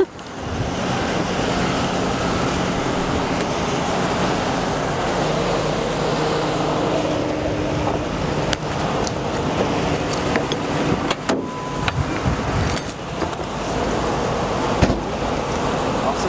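A car engine idling steadily, with a few sharp clicks and some light metallic jingling.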